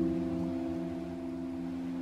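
Soft piano chord ringing out and slowly fading, with faint running water from a stream beneath it.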